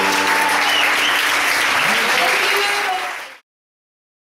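Audience applauding with some voices, just after a live band's song, with a last held note fading out at the start. The applause fades and cuts to silence about three and a half seconds in.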